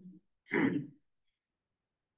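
A person clearing their throat once, briefly, about half a second in.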